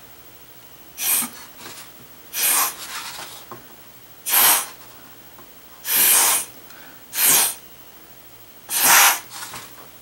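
Six short puffs of breath blown through a drinking straw, each a brief rush of air, pushing wet watercolour paint across the paper in spreading streaks.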